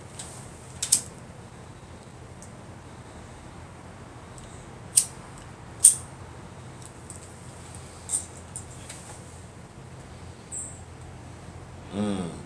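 A tobacco pipe being relit with a disposable lighter and puffed: a few sharp little clicks and pops, four of them distinct and spread out, over a faint steady low hum.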